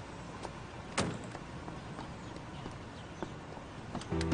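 A car door clicking open about a second in, over a steady low rumble from the 1950s Chevrolet sedan that has just pulled up.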